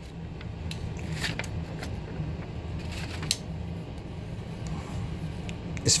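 Paper sheets being handled and swapped by hand, a few short rustles and clicks over a steady low hum.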